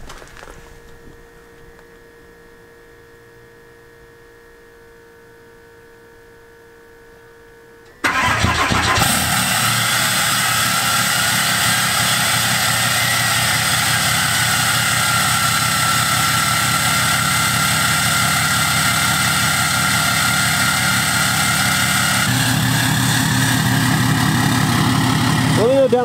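Cold start of a 2018 Ram 3500's turbodiesel engine. After a quiet wait of about eight seconds it fires suddenly and settles into a loud, steady idle through an aftermarket exhaust, with a faint whistle wavering in pitch over the idle. Near the end the idle note grows deeper.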